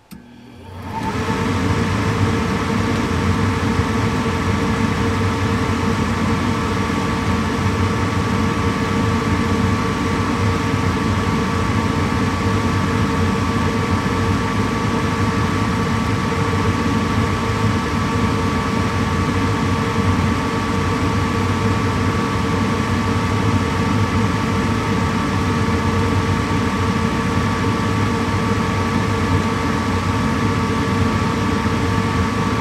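Carrier 58PAV gas furnace starting a heating call: a click, then the draft inducer motor spins up over about a second and a half and runs with a steady hum and whine.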